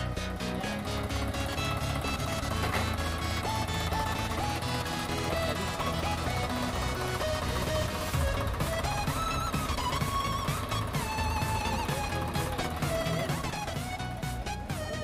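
Background music with a steady beat and a melody line.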